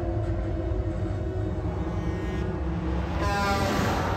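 Deep, steady rumble of a heavy truck driving through a road tunnel. About three seconds in, its air horn blasts loudly over a rising rush of noise as it passes.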